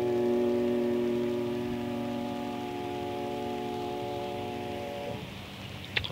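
The last sustained keyboard chord of a live band song holds and slowly fades, then cuts off about five seconds in, leaving a quiet studio with no applause.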